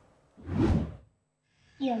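A whoosh transition sound effect, a short swell of noise that rises and fades about half a second in. Near the end a man's voice begins.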